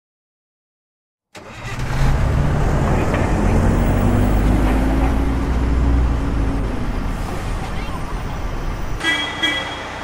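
A bus engine starting up about a second in and running loudly, its pitch rising slowly as if pulling away. Two brief high tones near the end.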